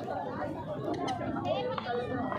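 Indistinct chatter of people talking in the background, no clear words.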